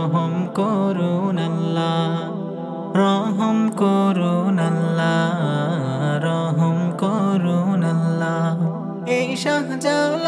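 Wordless a cappella interlude of a Bangla Islamic gojol: layered hummed voices moving over a steady low vocal drone, a little louder from about three seconds in.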